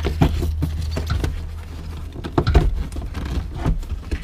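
Irregular plastic knocks, taps and scrapes as a passenger airbag module is tipped and worked up out of its opening in a Honda Civic dashboard. A steady low hum runs underneath and fades out about halfway through.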